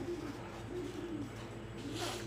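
Faint, low cooing of a pigeon: a few soft coos that rise and fall in pitch.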